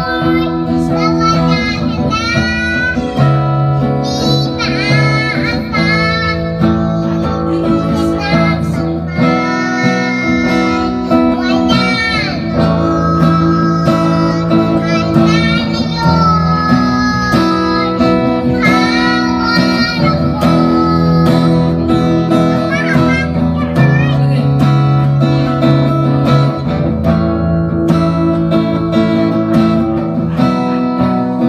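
A young girl singing a slow ballad into a microphone in phrases with short breaths, accompanied by an acoustic guitar playing chords.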